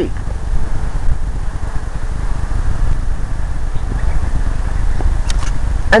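Wind buffeting the microphone: a loud, gusty low rumble that rises and falls.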